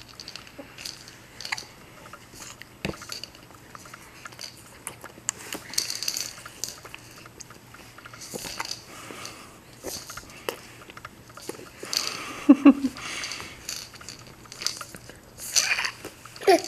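A seven-month-old baby gumming and sucking on a piece of watermelon, making irregular short mouth clicks. A brief voiced sound comes about three quarters of the way through.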